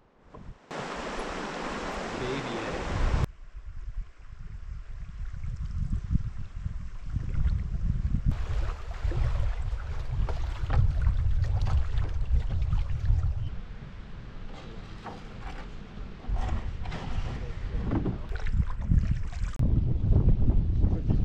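Running water rushing over rapids for the first few seconds, cut off sharply. Then wind rumbling on the microphone, with small splashes and knocks from paddling a canoe.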